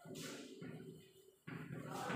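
Chalk scratching on a blackboard as a word is written, faint, with a sudden scratchy stroke just after the start and another about a second and a half in.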